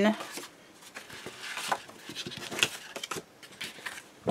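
Cardstock pieces being handled and laid down on a paper album page: light paper rustles and a few soft taps, the sharpest about two and a half seconds in.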